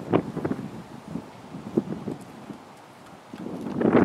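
Wind buffeting the camera microphone in gusts, a rough low rumble that comes strongly near the start, dies down through the middle and rises again near the end.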